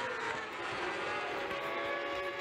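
Several 600cc racing motorcycles at high revs, heard from a distance, their engine notes overlapping with small rises and falls in pitch.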